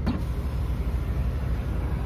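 Heavy truck's diesel engine running steadily at low revs, a low rumble heard from inside the cab while the rig creeps slowly through a manoeuvre.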